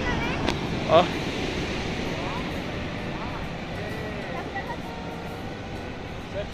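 Sea surf washing against a rocky shore, a steady rushing noise, with wind on the microphone.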